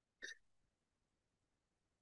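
Near silence, broken by one brief faint sound about a quarter second in.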